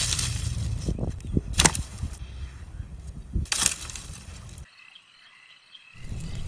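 Twigs and dry branches snapping and crunching, with three sharp cracks roughly two seconds apart over a low steady rumble. About three-quarters of the way through, the sound drops away almost to silence.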